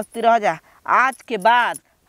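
A woman speaking Bhojpuri in loud, short phrases with rising and falling pitch, her bangles jingling as she gestures.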